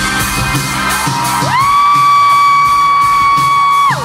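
A loud, high-pitched held scream from a fan close to the microphone: it slides up, holds one steady pitch for about two and a half seconds and drops off sharply. Live band music plays under it.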